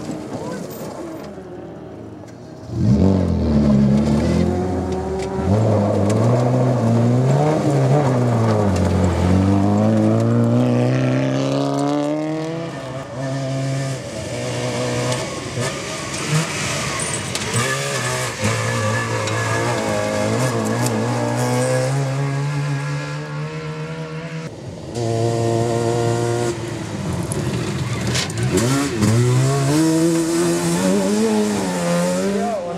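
Rally car engines revving hard on a gravel special stage, rising and falling in pitch through gear changes and lifts. One car comes in loud about three seconds in, and another about 25 seconds in.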